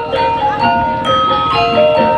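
Javanese gamelan playing: bronze metallophones strike a quick run of ringing notes that overlap one another.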